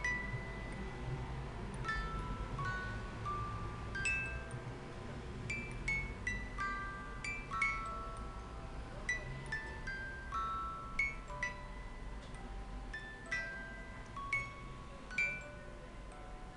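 Hand-cranked music box being turned, its steel comb plucked by the pinned cylinder to play a slow melody of short, bright, ringing notes, a few a second, over a faint low rumble from the turning mechanism.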